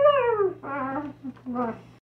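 Wordless pitched vocal calls: one long call falling in pitch at the start, then two shorter calls.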